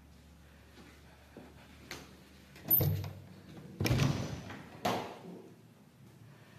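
An interior door being opened by its lever handle. There is a small click about two seconds in, then three louder knocks and bumps of the latch and door over the next two seconds.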